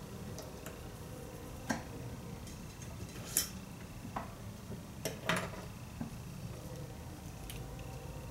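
Irregular sharp clicks and ticks of a clamp curling iron and metal duck bill hair clips being handled, about half a dozen, the loudest about three and a half seconds in, over a faint low hum.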